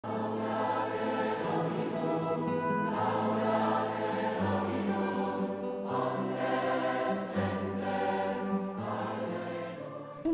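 A choir singing slow, sustained chords, the low notes moving to a new chord about every second and a half.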